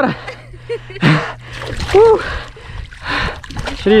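A hooked fish thrashing at the water's surface beside the bank, with bursts of splashing about a second in and again near three seconds. A person's short exclamation is heard about two seconds in.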